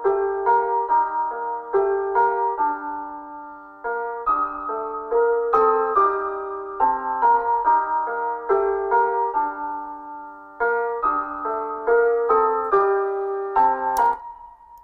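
Simple piano melody from the Addictive Keys software piano, played back in a loop with a counter melody layered on top, repeating a short phrase of single notes and chords.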